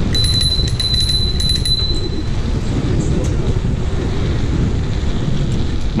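Wind rumble on the camera microphone and road noise while riding the e-bike at speed, with a thin, steady high-pitched whine through the first two seconds.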